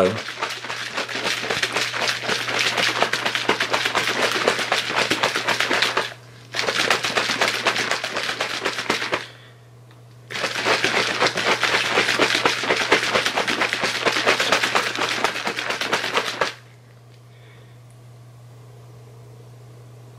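Plastic shaker bottle of protein shake shaken hard to mix the powder into water: a fast, continuous rattle in three bouts with two short pauses. The rattle stops a few seconds before the end, leaving only a steady low hum.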